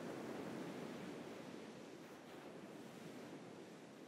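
Faint, even rushing background noise, swelling a little in the first second and fading toward the end.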